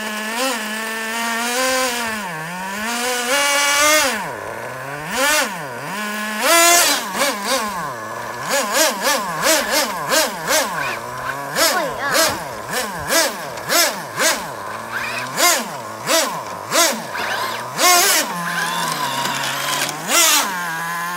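Traxxas Nitro Slash's small nitro engine idling, then revving up and down in quick repeated blips, about one every second, as it pushes against the other truck. It settles back to a steady idle near the end.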